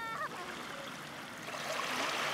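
Shallow seawater washing and trickling over sand at the shoreline, a steady soft rush. A brief high-pitched cry sounds at the very start.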